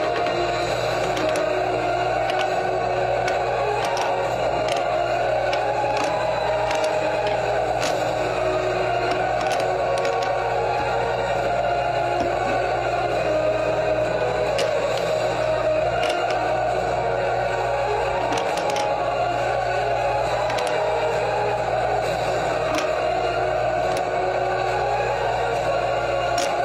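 Steady background music. Faint clicks of plastic bead puzzle pieces being set into the tray come through now and then.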